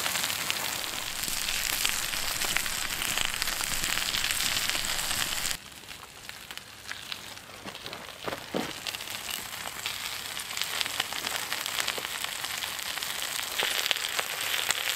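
Breakfast food, bacon, sausages and eggs among it, frying and sizzling on a hot cooking stone heated over a campfire, a dense crackling sizzle. About five and a half seconds in it drops suddenly to a much quieter crackle with scattered pops, building again toward the end.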